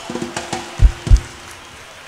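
A short instrumental flourish from a live band: a held note with two deep, loud drum hits about a third of a second apart, around a second in.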